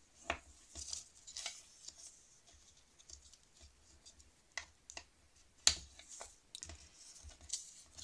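A bone folder scraping and pressing along folds in a sheet of scrapbooking paper to crease them, with faint paper rustling and light taps. One sharp click about two-thirds of the way through is the loudest sound.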